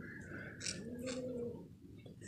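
A faint animal call in the background: one drawn-out note that rises and then falls in pitch, about half a second in. Knitting needles click lightly in the hands.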